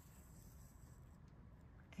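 Near silence: faint room tone with a low steady rumble.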